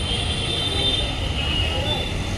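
Steady background noise of a busy street market: a low traffic rumble with the faint murmur of shoppers' voices.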